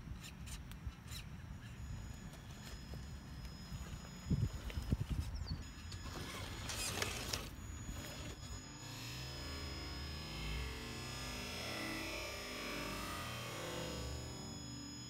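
Outdoor microphone noise with a low rumble and a few low thumps near the middle. About two-thirds of the way through, background music comes in and carries on.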